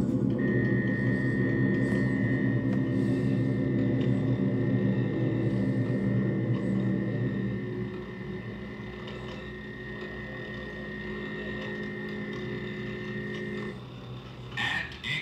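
Science-fiction electronic machine sound effect: a steady high whine over a low, layered electrical hum. The hum drops in level about halfway through, and both cut off just before the end.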